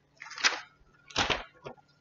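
A sheet of paper being picked up and handled: two short rustles and a smaller third.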